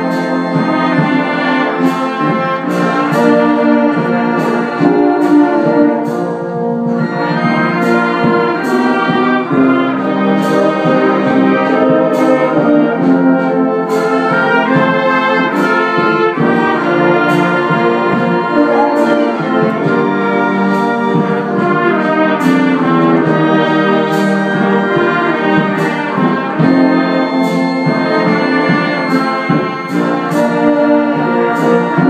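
A brass band of trumpets, trombones and tubas playing a piece together, loud and steady, with short sharp struck accents recurring through the music.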